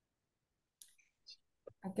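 Two short, sharp computer clicks about a second in, as highlighted text in a text box is clicked away; a voice says "okay" near the end.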